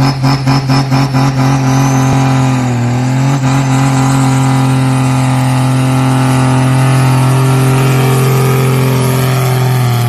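Diesel engine of a modified four-wheel-drive pulling tractor working under full load while it drags the weight sled. It pulses about four times a second at first, then settles into a loud, steady, high-revving drone.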